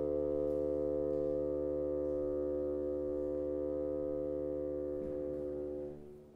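Solo bassoon holding one long sustained note that eases off a little and stops just before the end.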